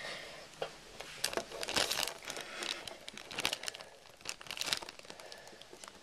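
Close handling noise: irregular rustling and crinkling with scattered sharp clicks.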